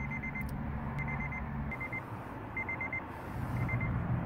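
Short, rapid high-pitched electronic beeps in groups of three or four, repeating several times, over the steady low hum of a car's idling engine heard from inside the cabin.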